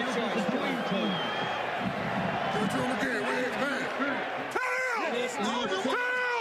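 Several men talking over one another on a football sideline, with stadium crowd noise behind them; a loud, high-pitched shout breaks out about four and a half seconds in, and another near the end.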